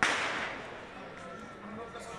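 A single firecracker bang: one sharp crack at the very start with a short fading tail, then low street noise.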